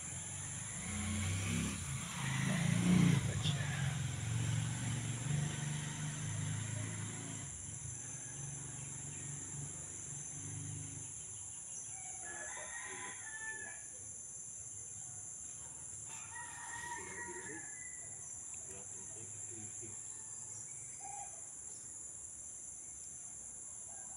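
Roosters crowing, two calls about halfway through, a few seconds apart, over steady high insect trilling. A low rumble fills the first several seconds and is the loudest sound.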